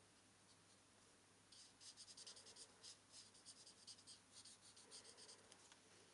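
Faint scratching of a Stampin' Blends alcohol marker's felt tip on cardstock in quick short strokes, starting about a second and a half in, as a stamped bird's face is coloured and shaded.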